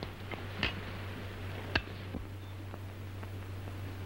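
Cutlery clinking on china dishes as food is served: a few light clinks, the loudest just under two seconds in, over the steady low hum of an old film soundtrack.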